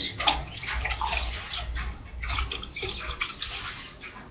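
Cranberry juice splashing from a bottle into a metal cocktail shaker tin over ice, poured in uneven gushes.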